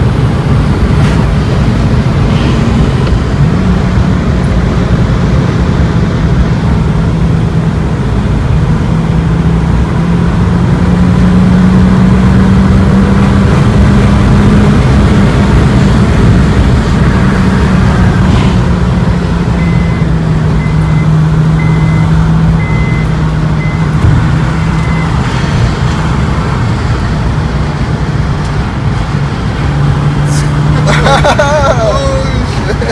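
Cabin sound of a 2008 Honda Fit's four-cylinder engine and tyres while driving at road speed, a steady low rumble with an engine hum that rises slightly around the middle and eases off later.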